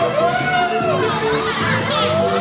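A group of children shouting and cheering together in long, high calls, over quadrilha dance music.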